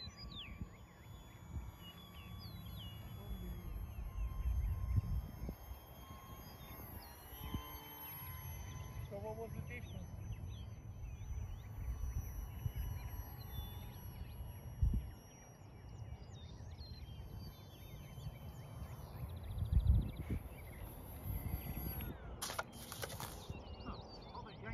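Wind rumbling and gusting on the microphone in an open field, with birds chirping and a faint high whine from the small electric motor of the distant RC flying wing, its pitch stepping up and down as the throttle changes.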